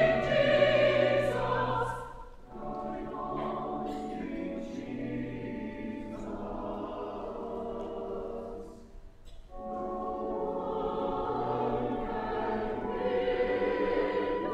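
Church choir singing a short sung response, with organ holding low notes underneath. It comes in phrases: loud at first, a brief break about two seconds in, a softer middle, another break near nine seconds, then swelling again toward the end.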